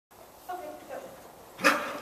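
A dog barks once, sharply, about one and a half seconds in, as it sets off on an agility run; fainter voice-like sounds come just before it.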